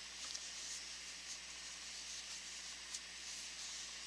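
Faint rustling and soft ticks of worsted-weight yarn being worked with a metal crochet hook, over a steady background hiss.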